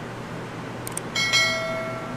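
Subscribe-button sound effect: two quick mouse clicks about a second in, then a bright bell chime that strikes twice in quick succession and rings out, over a steady low hum.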